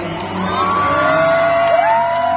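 Live choir and orchestra music: a singer holds one long note, and near the end a second, higher voice slides up and holds above it, with the audience's crowd noise underneath.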